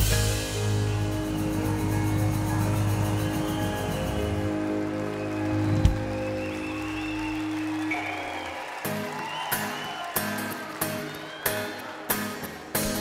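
Live band music: a full-band chord struck hard at the start rings out steadily for several seconds, then sharp drum hits come in about nine seconds in as the band picks the song back up.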